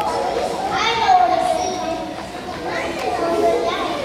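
A crowd of young children's voices chattering and calling out together, with a few drawn-out high voices, in a large hall.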